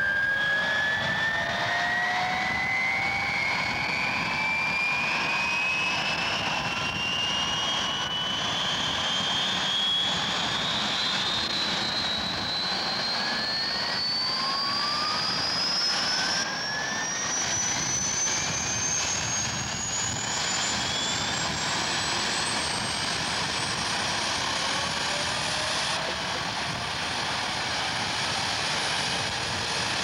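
Helicopter turbine engine spooling up: a high whine that climbs slowly and steadily in pitch over a constant rushing roar.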